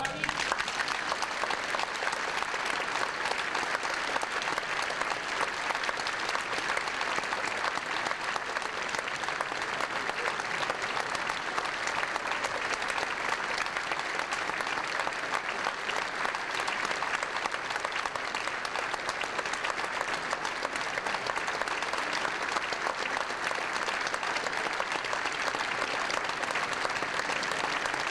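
Large concert audience applauding steadily, many hands clapping at once with no break.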